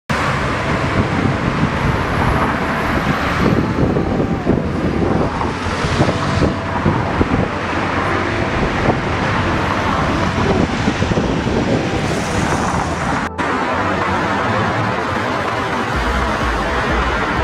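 City street traffic: cars and other vehicles passing, forming a steady wash of road noise, with a brief dropout in the sound after about 13 seconds.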